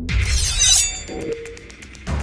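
A glass-shattering sound effect over the intro music. It comes as a sudden bright crash with ringing shards, loudest just under a second in, then dies away quickly while the music thins out.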